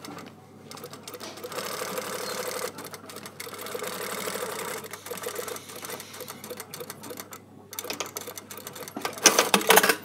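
Sewing machine stitching a welt down in short runs, starting and stopping, with back tacking. A burst of sharp, loud clicks comes near the end.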